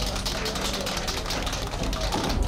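Fast, irregular hand clapping at the end of a song, with the song's last held low note fading out about a second in.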